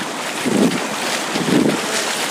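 Small waves washing in over the shallows, with wind rumbling on a clip-on microphone; the noise swells twice.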